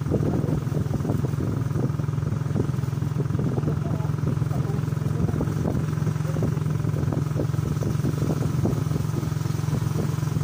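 Small motorcycle engine running steadily as it rides along, a low even drone with irregular rattling noise over it.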